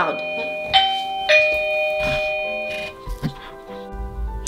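Two bell-like chime notes struck about three-quarters of a second and a second and a half in, each ringing on and fading, over soft background music.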